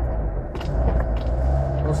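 Car engine running, heard from inside the cabin as a steady low rumble. The engine keeps stalling and losing revs, which the driver blames on poor-quality 80-octane petrol.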